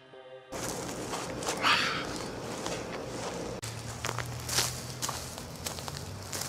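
Footsteps and rustling outdoors, with scattered sharp clicks and a low steady hum in the second half.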